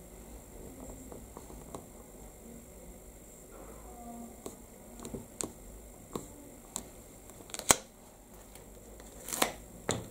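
Clear stamp on an acrylic block being pressed onto card and then lifted, with quiet handling noise and scattered light clicks and taps of the acrylic block. The sharpest click comes about three-quarters of the way through, and two more come near the end.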